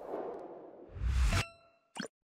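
Channel logo sound effect: a swelling whoosh with a low boom, ending in a bright metallic ding that rings on for a moment, then a short click at the very end.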